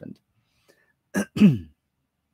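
A man clearing his throat once, a little over a second in: a short rasp followed by a voiced grunt that falls in pitch.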